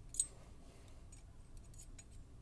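A single sharp, light metallic click, then a few fainter ticks: steel tweezers and a small pin touching the lock cylinder's plug and pin chamber.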